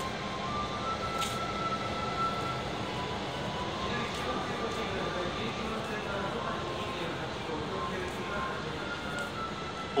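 A simple electronic chime melody plays over the station platform speakers, one held note after another, over a steady background hum.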